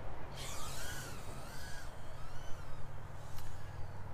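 Faint whine of the Eachine Novice-i FPV quadcopter's small electric motors in flight, rising and falling in pitch as the throttle changes.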